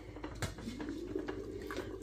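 Stainless steel lid of a steamer pot lifted and handled, with one sharp metal clink about half a second in. A faint wavering hum runs under it afterwards.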